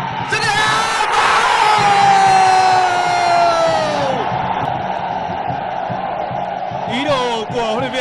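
A commentator's drawn-out goal shout, held for about three and a half seconds and falling in pitch until it breaks off, over a cheering stadium crowd. The crowd noise carries on after the shout.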